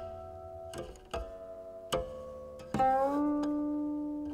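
A steel-stringed guqin played slowly: single plucked notes ring out one at a time for the first two seconds. Then a louder note comes about two-thirds of the way through; its pitch slides up slightly and it rings on steadily.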